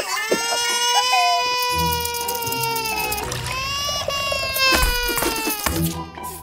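A cartoon adult's voice wailing like a baby: two long, drawn-out cries, the second after a short break about three seconds in, over background cartoon music.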